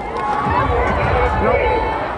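Several voices talking over one another, not clearly intelligible, with a low rumble underneath.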